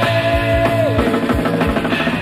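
Early-1970s British rock band recording: drum kit and bass under a sustained lead note that drops in pitch about halfway through.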